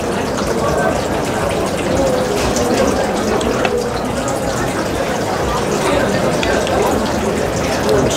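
Steady restaurant din: many voices talking at once at other tables, with a few faint clinks of knife and fork on a plate.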